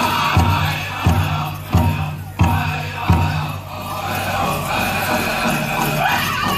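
A powwow drum group singing over a big drum, with about five heavy drum strikes two-thirds of a second apart in the first three seconds, then the song carries on without them. The dancers' bells jingle along.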